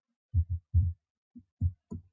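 Computer keyboard keystrokes heard as about six short, dull low thumps in an irregular run while a number is typed into a spreadsheet and entered.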